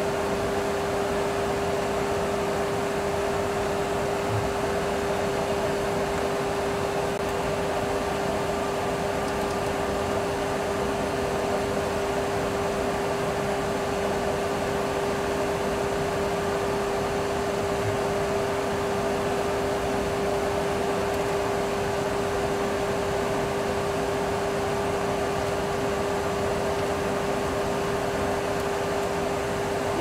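Steady cockpit noise in a Boeing 737 Classic flight simulator on final approach: an even rush of air-like noise with a constant mid-pitched hum running through it.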